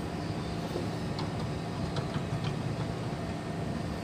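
Steady mechanical hum and low rumble holding a few even tones, with a few faint clicks.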